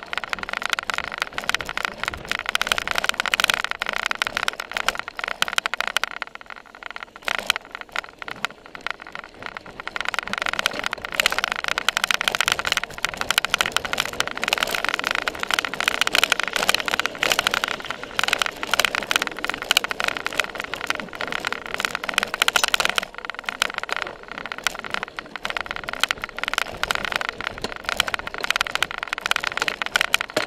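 Constant rattling, knocking and rushing from a seatpost-mounted camera on a cyclocross bike ridden hard over bumpy grass and dirt, with a faint steady whine underneath. It eases off briefly twice, about a quarter of the way in and again about three quarters in.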